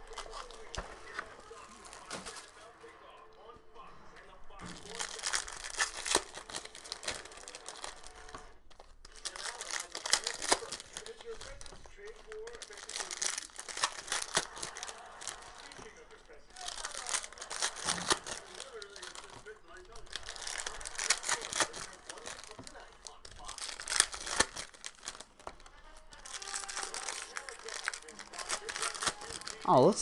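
Foil trading-card pack wrappers being torn open and crinkled, one pack after another, in bursts of a few seconds each with short pauses between.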